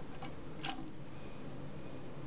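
Small plastic clicks from the dual-flush toilet handle mechanism being handled: a faint click just after the start and a sharper one a little over half a second in, over a steady low background hum.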